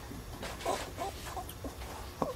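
Soft laughter from people at the table, in a few short, broken bursts.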